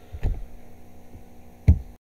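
Steady low electrical hum on the recording, with two dull thumps, one about a quarter second in and a louder one near the end, before the audio cuts off.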